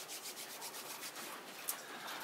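Hands rubbing together: a faint, quick, rhythmic dry rasp, with a single sharp click near the end.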